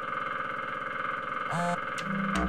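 Cartoon woodpecker drumming rapidly on a tree: a fast, even, buzzing rattle at a steady level, loud enough to wake a sleeper.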